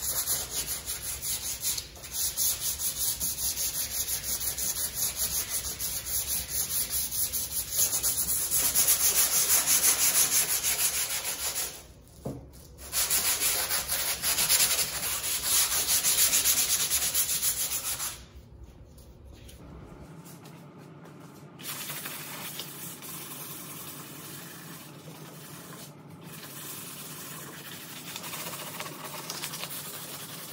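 Sanding sponge rubbed by hand in rapid back-and-forth strokes over the fiberglass underside of a 1976 Corvette hood. The strokes are loud for most of the first two-thirds, with a brief pause near the middle, then turn softer and lighter.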